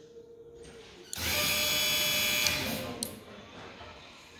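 A dump trailer's electric hydraulic pump runs briefly, a steady motor whine with several tones. It starts about a second in and cuts off sharply about a second and a half later.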